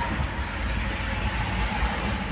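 Steady road and engine noise inside a moving car's cabin on a highway: a low, even rumble of tyres and engine.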